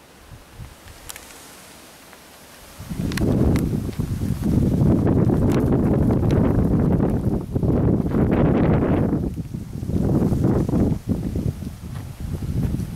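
Wind buffeting the microphone in gusts. It is faint at first with a few light ticks, then turns loud and rumbling about three seconds in, rising and falling.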